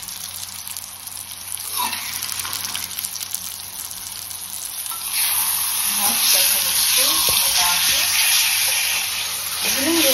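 Raw chicken pieces sizzling in hot oil and masala in a kadhai, getting louder about halfway through as they are stirred in with a slotted spoon.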